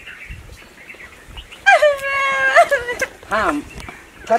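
A long, high wailing cry about halfway through, holding one pitch for about a second before bending up at the end.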